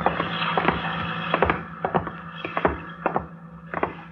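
Radio-drama sound effect of footsteps going down wooden steps: a string of uneven knocks over a steady low hum.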